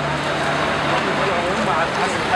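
Several people talking close by over steady street traffic noise, with a low steady hum through most of it.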